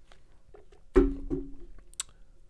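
A water bottle set down on a desk: a sharp knock about a second in that rings briefly, then a second lighter knock and ring just after.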